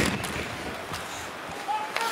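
Ice hockey arena ambience: a steady crowd hubbub, with a sharp knock of the puck or a stick on the boards right at the start.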